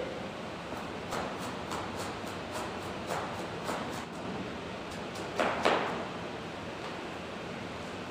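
Kitchen knife shredding cabbage on a chopping board: a run of light, quick cuts, about three a second, then two louder chops a little past the middle. A steady background hiss runs under them.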